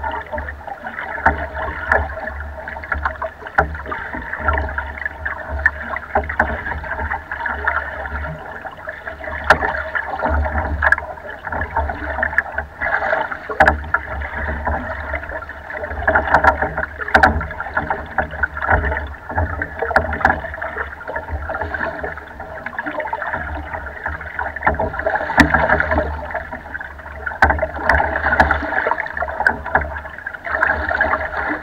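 Water sloshing and splashing against the hull of a small rowboat under way on choppy water, rising and falling in irregular surges, with frequent small knocks and a low rumble throughout.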